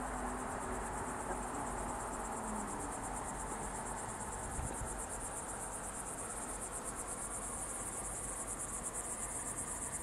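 Crickets singing continuously in a high, fast-pulsing trill that holds steady throughout.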